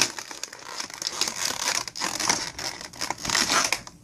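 Stiff clear plastic blister packaging crinkling and crackling in the hands as a small plastic doll dress is worked out of it, in several louder swells with sharp clicks.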